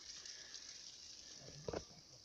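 Near silence: a faint outdoor hiss, with one short soft rustle about three-quarters of the way through.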